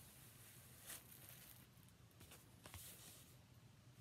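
Faint crinkling and tearing of plastic shrink wrap being peeled off an LP sleeve, with a few small crackles, one slightly louder about a second in.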